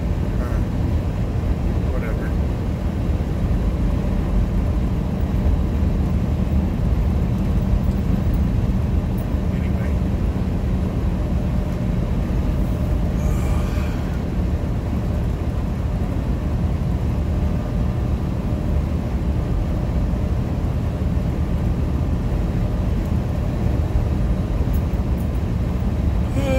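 Steady engine drone and road noise inside a tractor-trailer's cab cruising at highway speed.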